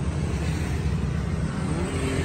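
Steady low rumble of a motor vehicle engine running.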